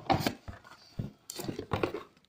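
Cardboard box and packing handled in several short scrapes and knocks as a corded power drill is pulled up out of its box.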